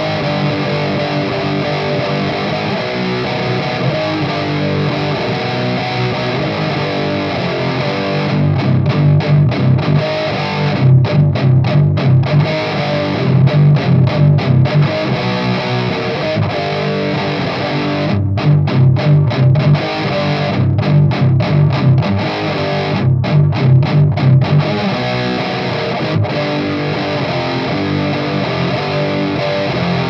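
Heavily distorted electric guitar played through a Haunted Labs Old Ruin distortion pedal, with a thick 90s doom and death metal tone. Sustained low chords at first, then from about 8 s to 25 s several short stretches of fast chugging riffs with brief stops between them, and sustained chords again near the end.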